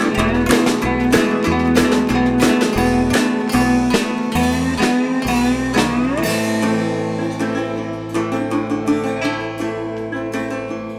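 Instrumental acoustic band passage: a resonator guitar picked over walking notes on an upright double bass, with a cymbal tapped in a steady beat with bundled rods. About six seconds in, a note glides upward and the beat thins out, leaving long held notes.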